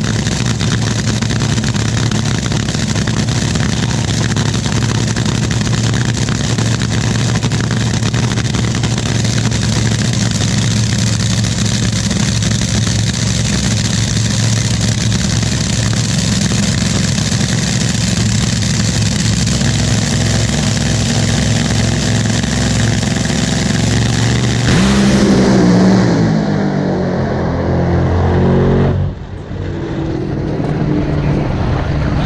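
Top Fuel dragster's supercharged nitromethane V8 idling loudly and steadily at the starting line. About 25 seconds in it goes to full throttle as the car launches, and its pitch falls as the car pulls away down the track.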